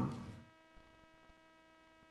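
A man's word trails off in the first half second. Then near silence, with only a faint, steady electrical hum made of several even tones.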